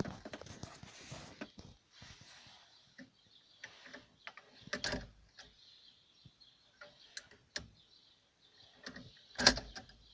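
Irregular metallic clicks and knocks from a DIY electric steering clutch mechanism on a combine's steering column, with two louder clunks, one about halfway through and one near the end.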